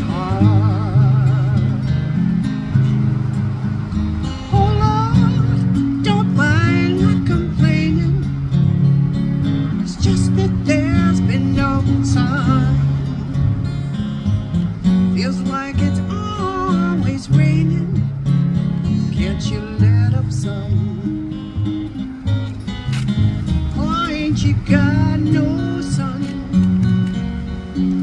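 Live acoustic folk music: two acoustic guitars playing over a walking upright double bass, with a wavering, sliding melody line on top and no break in the sound.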